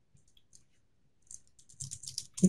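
Computer keyboard keys clicking faintly as a terminal command is typed: a few scattered keystrokes, then a quicker run of them in the second half.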